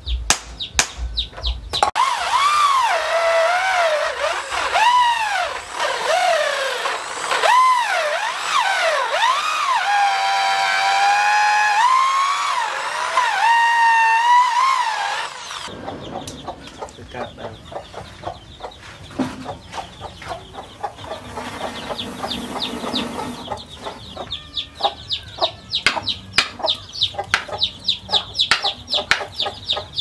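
Electric hand drill boring into a wooden knife handle, its motor whine rising and falling in pitch as the trigger is eased and squeezed, then cutting off suddenly about halfway through. A few hammer knocks come just before the drill starts, and after it stops there is a quieter run of quick clicks and ticks.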